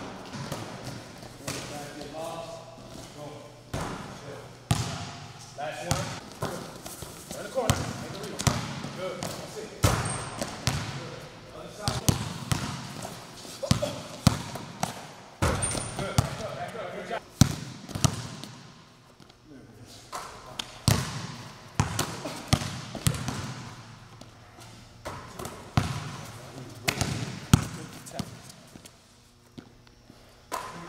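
Basketballs bouncing on an indoor court floor, sharp thuds at an uneven pace of one or two a second, with a coach's voice calling out the drill.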